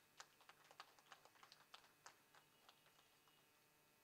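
Near silence with a scatter of faint, irregular clicks over the first three seconds.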